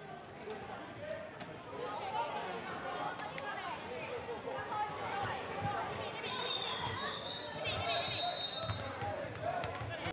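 Echoing sports-hall hubbub: many children's voices chattering and calling, with footballs bouncing and thudding on the wooden court floor. A few short high-pitched squeaks come about seven to eight seconds in.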